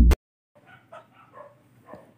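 The last moment of an electronic intro music sting cuts off abruptly, then faint dog barking follows: several short, separate barks in the background.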